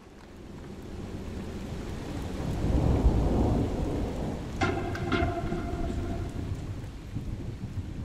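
Thunder rumbling over steady rain, swelling to its loudest about three seconds in and then easing off. A brief ringing tone sounds about halfway through.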